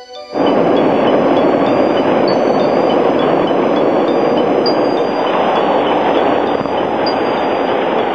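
Subway train running into an underground station, a loud, steady rumbling rush that starts abruptly just after the start and cuts off suddenly at the end. Chiming music plays over it.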